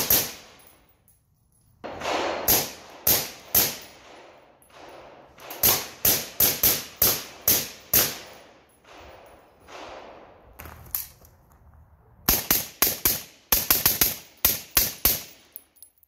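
Suppressed Zastava M90 rifle with a Dead Air Sandman S suppressor firing .223 in quick semi-automatic strings with pauses of a second or two between them. Each shot is sharp, with a short ringing tail, and the longest, fastest string comes near the end. The rifle is cycling reliably on the reduced gas setting 2 of an aftermarket gas regulator, with the bolt carrier freshly lubed, throwing its empties about 10 feet.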